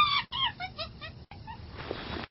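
A chimpanzee calling: one high call, then a quick run of short calls falling in pitch that die away after about a second.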